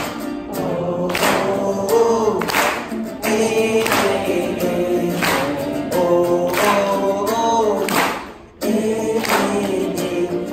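Live sing-along: a man singing and strumming an acoustic guitar, with a group of voices joining in on the chorus. The music breaks off briefly about eight and a half seconds in, then comes back.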